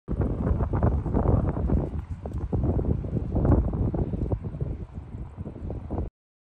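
Wind buffeting the microphone: a loud, gusty low rumble that rises and falls and eases somewhat near the end.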